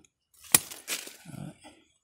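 Hand pruning shears snipping a small pomelo branch: a sharp click about half a second in and another just after, with the leaves rustling as the branch is handled.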